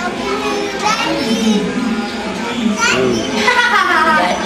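Young children's voices talking and calling out, with some rising and falling in pitch near the end.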